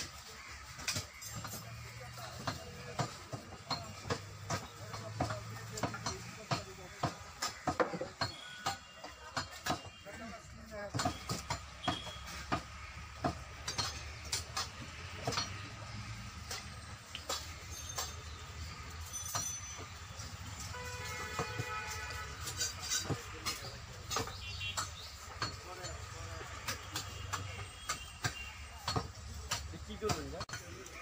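Knives cutting and scraping cow hide away from a carcass, heard as many short sharp clicks and ticks in an irregular run, over background voices.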